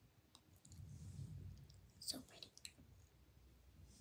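Quiet clicks and taps of makeup being handled, a brush and eyeshadow palette, with a soft low rumble about a second in and a cluster of sharper clicks about two seconds in.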